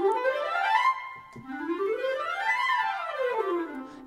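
Sampled orchestral woodwind runs from the EastWest Hollywood Winds library: a quick run climbing up a scale, then a second run that rises and comes back down.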